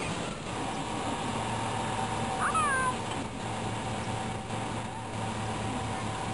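Outdoor camcorder sound playing with the video clip: steady background hiss and hum, with one short, high, squeaky call about two and a half seconds in that rises and then falls.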